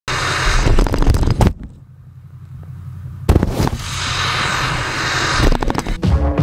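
Pickup truck's engine rumbling as it drives hard through snow, with rapid rough buffeting of wind and flying snow on a body-mounted camera. The sound drops off after about a second and a half, comes back with a sudden loud burst a little past three seconds, then builds as the truck speeds up.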